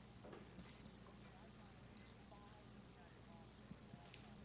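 Near silence in a quiet hall, broken by two short, high electronic beeps about a second and a quarter apart: a digital timer being started for 30 seconds of prep time.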